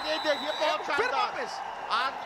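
Excited men's voices speaking and calling out, at times overlapping.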